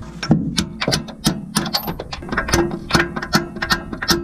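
Ratchet wrench clicking in quick strokes, about four clicks a second, as a bolt is run in.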